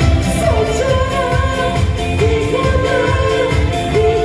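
A woman singing a pop song live into a microphone over an amplified band, with an electric guitar and a steady, bass-heavy beat.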